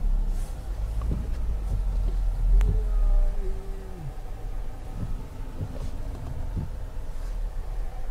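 Low engine and tyre rumble inside a car's cabin as it drives slowly on a snow-covered highway, heaviest in the first three seconds. A single click comes a little over two seconds in, followed by a brief pitched tone.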